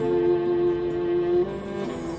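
Slow background music with long held notes. The notes change and the music gets a little softer about one and a half seconds in.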